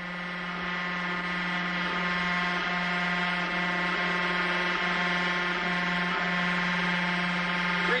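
Hydraulic tensile test machine running with a steady electric buzzing hum, growing gradually louder over the first few seconds as it loads a sling webbing strap between 2,000 and 3,000 pounds of pull.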